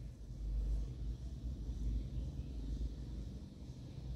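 A low, steady background rumble.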